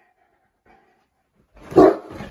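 A Boerboel barks once, loud and short, near the end.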